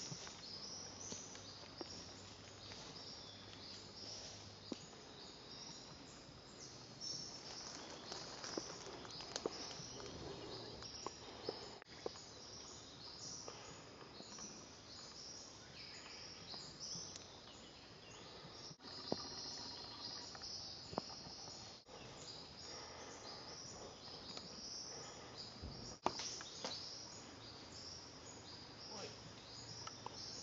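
Faint forest ambience: continual high-pitched chirping from birds and insects, with a few sharp clicks and soft footsteps in dry leaf litter.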